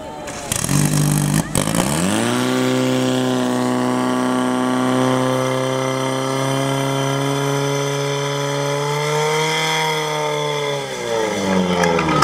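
Portable fire pump's engine revving up about two seconds in and holding steady at high revs while it drives water through the hoses to the spraying nozzles, then throttling back near the end.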